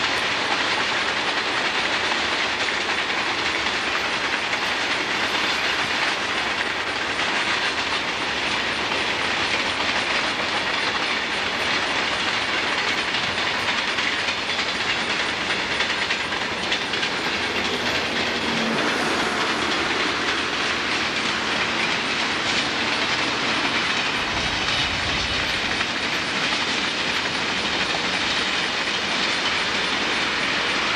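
Cars of a long mixed freight train rolling past, a steady, unbroken noise of wheels running on the rails.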